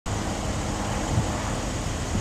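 Steady outdoor background noise of road traffic, an even rumble and hiss with no distinct events.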